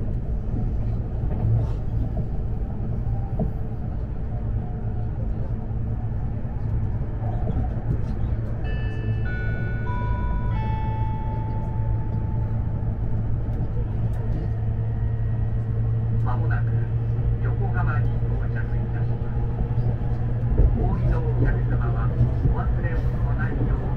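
Steady rumble of a JR East E257 series electric train running, heard inside the passenger cabin. About nine seconds in, an onboard electronic chime plays about four notes stepping down in pitch, the last one held.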